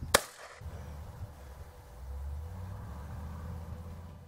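A single shot from a Benelli Nova 12-gauge pump-action shotgun fired almost straight up, loaded with a small flashlight in place of shot: one sharp report with a brief echo. A low rumble follows.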